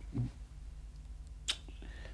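A pause in the dialogue over a low steady hum, broken by one short sharp click with a brief hiss about one and a half seconds in.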